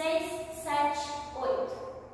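A woman's voice speaking steadily, in a continuous stretch of talk.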